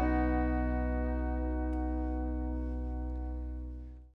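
A bluegrass band's final chord rings out and slowly dies away, with a deep low note held under it, then fades out quickly at the very end.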